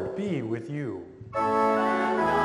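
A man's voice chanting a short liturgical line, then about one and a half seconds in a church organ begins a steady, sustained chord that leads into the congregation's sung response.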